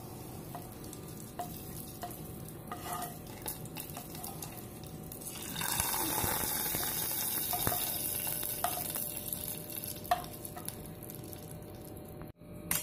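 Hot tempering oil with mustard seeds, dried red chillies and curry leaves sizzling as it is poured from a frying pan into yogurt. The sizzle swells about halfway through, holds for a couple of seconds and then dies away. A few light ticks sound before and after it.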